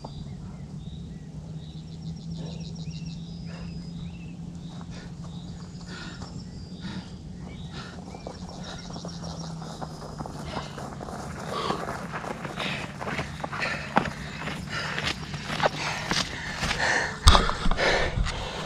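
A steady low hum with faint high chirps, then from about ten seconds in, footsteps through grass coming closer and louder. Near the end there is a sharp loud knock as the camera is handled.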